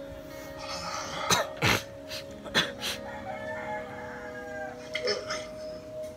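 A rooster crowing faintly over music with steady held tones, with a few sharp clicks in the first half.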